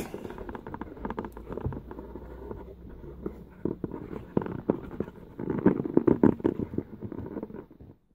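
Handling noise from a handheld phone camera being moved and repositioned: a jumble of small clicks, knocks and rubbing, busiest from about five to seven seconds in.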